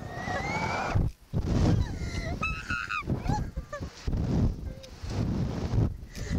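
Two young women laughing and shrieking in high, gliding bursts while riding a Slingshot reverse-bungee ride, with wind rushing over the microphone underneath.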